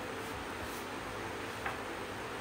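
Electric floor fan running with a steady whir and faint hum, with a single light click about one and a half seconds in.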